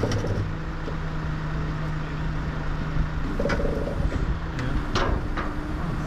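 A vehicle engine idling with a steady low hum, with a few short clicks and knocks in the second half.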